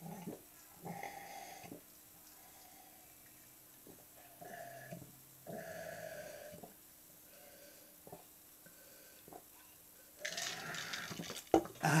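A person gulping a cola drink from a glass, with several separate swallows. Near the end comes a loud, breathy exhale after the drink.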